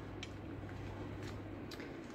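Tarot cards being laid down on a cloth-covered table: two faint soft clicks, one near the start and one near the end, over a low steady hum.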